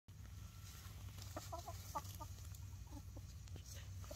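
Backyard hens giving a string of short, soft clucks close by, most of them between about one and three and a half seconds in. A low steady hum runs underneath.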